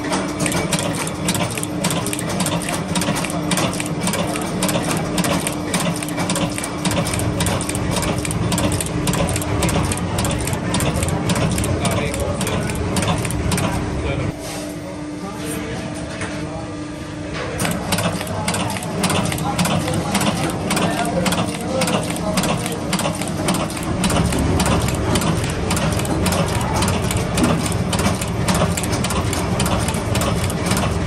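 Workshop machinery running, with a steady hum and fast, continuous clicking and clatter that dips for a few seconds about halfway through.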